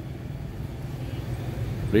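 A steady low engine hum from a motor vehicle running nearby.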